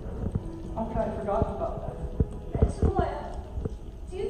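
Actors speaking short lines of dialogue, with a scatter of dull knocks and taps, several close together in the second half.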